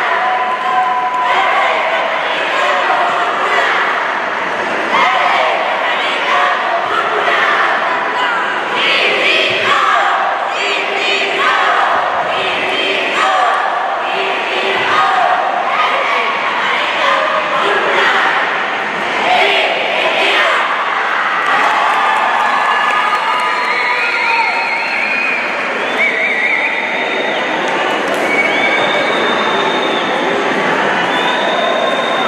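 Cheerleading squad shouting a rhythmic cheer in unison, the words coming in short repeated blocks, with crowd cheering mixed in. Some shouts are held longer in the last few seconds.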